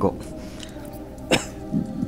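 A man's single short cough about halfway through, followed by a brief vocal sound near the end, over a faint steady background hum.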